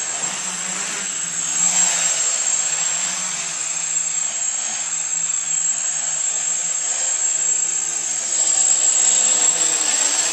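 Home-built quadcopter's four KDA 20-22L brushless motors spinning 10x6 propellers in flight, a buzzing drone whose pitch wavers up and down as the throttle changes. It grows louder around two seconds in and again near the end.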